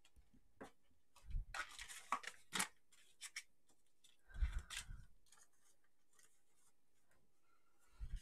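Sheets of paper and card rustling and sliding as they are handled and laid down on a table. There are a few short spells of rustling with a couple of soft thuds over the first five seconds or so.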